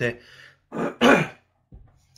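A man clearing his throat: a few short bursts, the loudest about a second in.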